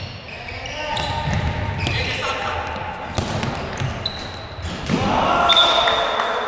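Indoor five-a-side football in a sports hall: a ball being kicked and bouncing, short high squeaks from shoes on the floor, and players shouting, all echoing in the hall. The shouting grows loudest near the end.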